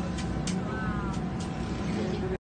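A steady low rumble under a noisy hiss, with a few faint clicks and a brief falling chirp about a second in.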